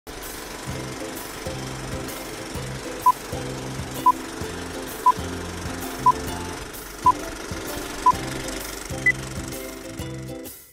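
Film-leader countdown sound effect: a short beep once a second, six at the same pitch, then a single higher beep about a second later. Under the beeps runs a steady mechanical clatter.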